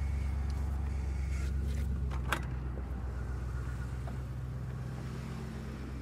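Ford pickup truck's engine idling steadily, with a single sharp click about two seconds in.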